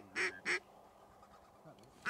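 Three short duck quacks in quick succession in the first half-second.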